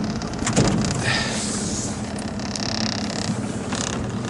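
Outboard motor of an aluminium coaching launch running steadily under way, with wind and water noise over it and a brief rush of noise about half a second in.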